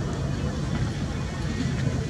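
Outdoor training-pitch ambience: a steady low rumble with faint distant voices.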